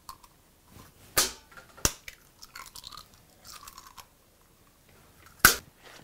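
An egg cracked by hand into a plastic mixing bowl: a few sharp clicks of eggshell, the loudest near the end, with soft faint sounds between.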